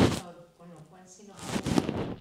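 A sharp knock close to the microphone at the start, then a quiet stretch with a faint murmured voice. About one and a half seconds in comes a short burst of rustling and clattering handling noise at the desk.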